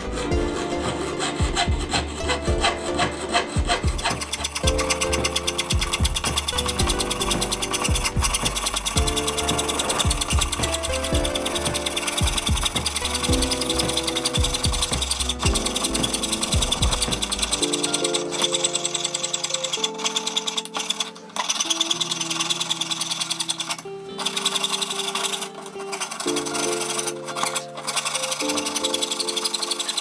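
Fine-bladed hand piercing saw cutting a thin metal plate in quick, short strokes, a rapid rasping scrape, with background music playing under it.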